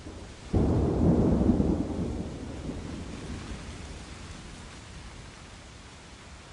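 A thunderclap starts suddenly about half a second in, then rumbles deep and fades away over the next few seconds. Steady rain hisses underneath throughout.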